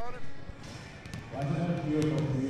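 A few basketball bounces on a wooden gym floor in the first second, with voices in the hall.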